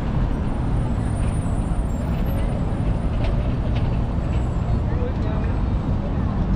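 Steady low rumble of road traffic, a city bus among the vehicles, with the chatter of people walking close by.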